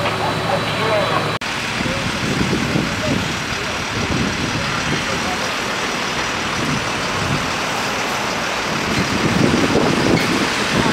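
Fire engines' diesel engines running, a continuous rough rumble, with indistinct voices in the background. A steady low hum in the first second and a half is cut off abruptly.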